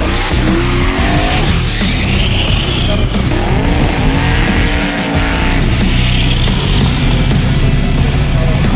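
Drag car's burnout: tyres squealing and the engine revving under a layer of background rock music.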